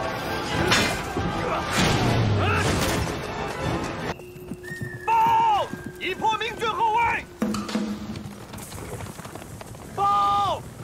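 Horses whinnying several times, in arching, falling calls about halfway through, over a held music drone. A dense clatter of hooves and battle commotion fills the first few seconds.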